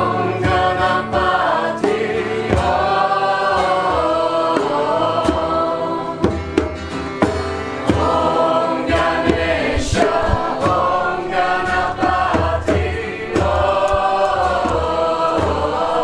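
A group of voices singing a mantra together in chorus, in phrases of held notes, over a low steady accompaniment.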